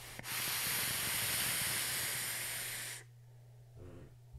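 A long direct-lung draw on a rebuildable dripping atomizer (Valhalla RDA with AJ Holland coils, about 0.3 ohm at 140 watts): about three seconds of airflow hiss with the coils' deep crackle, stopping abruptly. A faint breath follows near the end.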